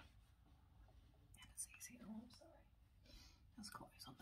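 Near silence, with faint whispering and a few soft mouth clicks close to the microphone.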